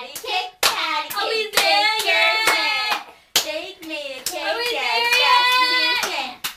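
Two young girls singing a hand-clapping rhyme, their palms clapping together in time with the song.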